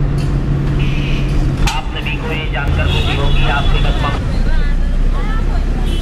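Engine and road noise heard from inside a moving vehicle, steady and loud, with the engine note changing a little under two seconds in. Voices and street sounds come through in the background.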